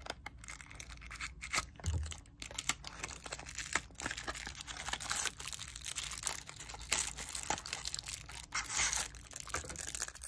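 Clear plastic packaging bags crinkling and rustling as small parts are taken out of a cardboard box, with scattered sharp clicks and scrapes of cardboard being handled.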